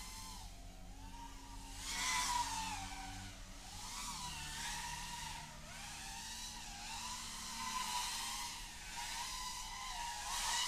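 Brushless motors and props of a five-inch FPV racing quad (2205 2350KV motors) in flight, a whine that rises and falls in pitch with throttle changes and swells louder about two seconds in and again near eight seconds.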